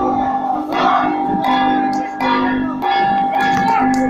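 Okinawan hatagashira procession band: drums and metal gongs struck in a repeating pattern, with ringing tones held about half a second at a time between the strikes.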